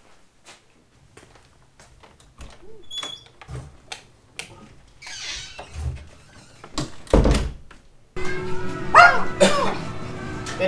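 A string of faint clicks and knocks, then a loud thump about seven seconds in. From about eight seconds small dogs whine and yap.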